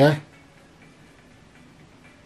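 A man's voice saying a short word right at the start, then quiet room tone with nothing distinct.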